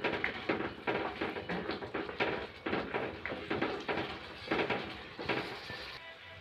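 Spatula stirring thick tomato masala as it fries in a nonstick kadhai: irregular scrapes and taps against the pan, over a steady hiss.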